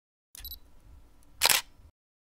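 Camera snapshot sound effect: a short high beep, then a single loud shutter click about a second later.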